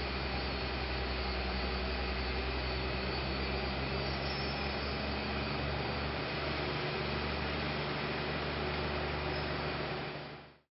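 Steady mechanical drone of construction machinery running, a constant low hum with an even noise over it.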